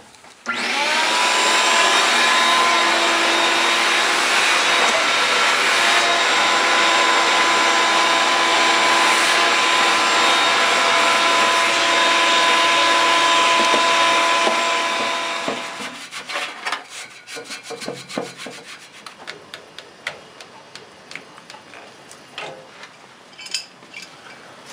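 Vacuum cleaner switched on with a brief rising whine, running steadily as its brush nozzle cleans a furnace blower wheel, then switched off and winding down about fifteen seconds in. Afterwards come light clicks and rattles of tools being handled.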